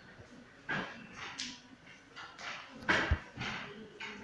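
A dog in the background making several short, brief sounds, the loudest about three seconds in.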